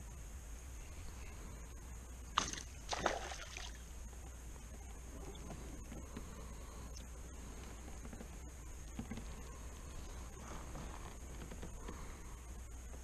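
Quiet background on the water while fishing from a small boat, with a steady high-pitched drone. There is a sharp knock about two and a half seconds in, followed straight after by a short noisy scuffle, and a few faint taps later on.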